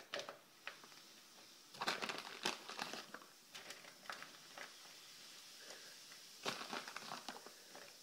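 Faint, scattered crinkling and crackling as baking soda is shaken into a foil-lined bowl of hot water, in short clusters about two seconds in and again near seven seconds.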